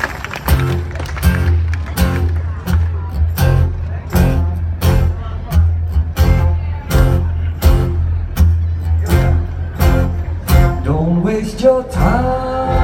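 Live band playing an instrumental intro: drums on a steady beat of about three hits every two seconds, over a low bass line and acoustic guitar strumming, with a note sliding upward near the end.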